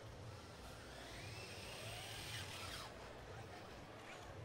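Faint electric motor whine from competition robots driving across the field, rising and then falling in pitch as they speed up and slow down, over a low steady background hum.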